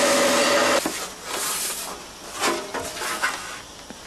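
A power grinder grinding metal and throwing a shower of sparks, a loud hiss with a steady tone in it that stops about a second in. After it come quieter, mixed handling sounds.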